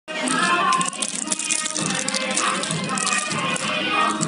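Cellophane lollipop wrappers crinkling and rattling as the pile of wrapped lollipops is handled, over music.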